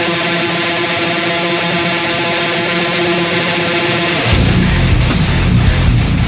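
Heavy metal played on a distorted electric guitar (Squier Affinity with an EMG 89 pickup, through a Line 6 HX Stomp) with a backing band: a held chord rings for about four seconds with no drums, then the drums and bass come in with the full band and palm-muted riffing.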